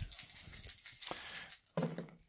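A handful of small plastic dice rattled and rolled into a padded fabric dice tray: a quick run of many small clacks that dies away after about a second and a half.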